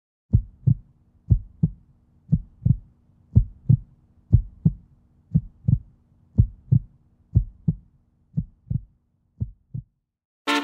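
Heartbeat sound effect: paired lub-dub thumps, about one beat a second, ten in all, growing fainter over the last two seconds.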